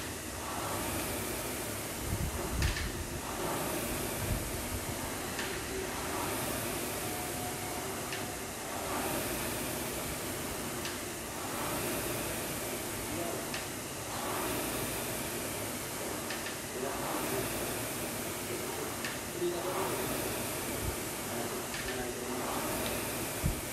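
Air rowing machine being rowed: its fan flywheel spins continuously, its noise swelling with each drive stroke about every two and a half seconds.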